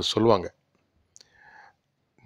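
A man's narrating voice ends a word in the first half second, then a pause broken only by a faint click and a brief soft noise.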